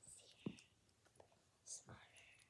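Near silence with faint handling sounds as a knit jacket is pulled onto a baby doll: a soft bump about half a second in, a few faint ticks, and a short hiss near the end.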